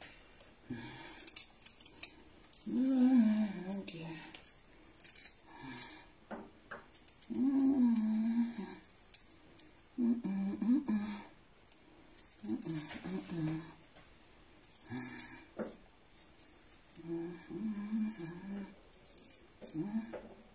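A woman's voice in several short wordless phrases, like humming or murmuring to herself, with light clicks and scrapes of kitchen handling in between as a knife works on a beetroot.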